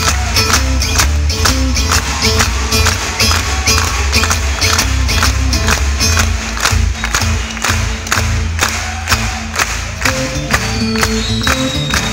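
Live twelve-string guitar playing an instrumental passage, picked and strummed in a steady, even rhythm over a strong low beat, heard through a concert PA.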